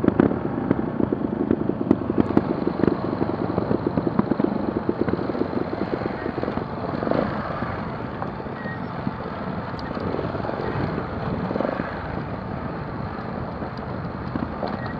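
Trials motorcycle engine running at low revs on a rocky downhill trail, louder in the first half, then quieter with a few short swells of throttle.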